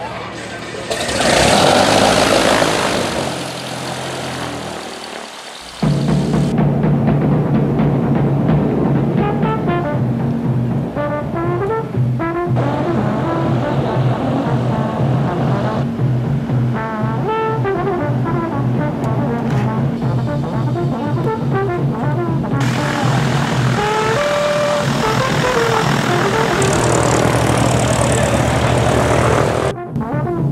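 A propeller aircraft engine runs loudly for the first few seconds. About six seconds in, it cuts sharply to orchestral music led by brass, over a steady low drone, which carries on to the end.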